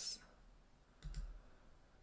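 A computer mouse click, a quick double tick about a second in, advancing a presentation slide; otherwise faint room tone.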